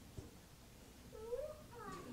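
A faint, short whimpering cry from a baby, rising and falling in pitch, starting about a second in and lasting under a second, in an otherwise quiet room.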